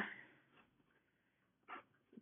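Near silence: room tone in a pause between words, with a short soft breath near the end.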